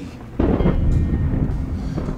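A deep rumble of thunder, used as a sound effect, breaking in suddenly about half a second in and rolling on heavily in the low end.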